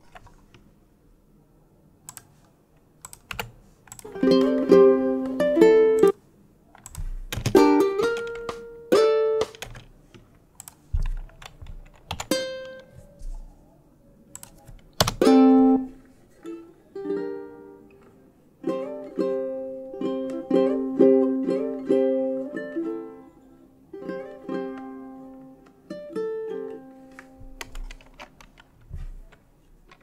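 Fingerstyle ukulele heard in short phrases of a few plucked notes each, stopping and starting with gaps between. Computer keyboard keys click in the gaps, as notes are typed into tab software.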